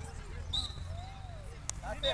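Youth football match: faint scattered shouts of players and spectators, with one sharp knock of a football being kicked about one and a half seconds in. A brief faint high steady tone sounds about half a second in.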